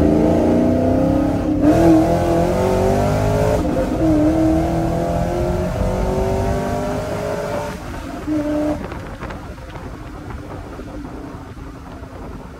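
A cammed V8 pickup truck's engine pulling hard through a loud Corsa Extreme equal-length exhaust with no resonators, heard from inside the cab. The engine note climbs steadily in pitch with two brief breaks, then the driver lifts off about eight seconds in and it settles into a quieter, lower rumble.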